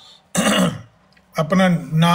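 A man clears his throat once, a short rasping burst a moment after a pause in his talk, and then starts speaking again near the end.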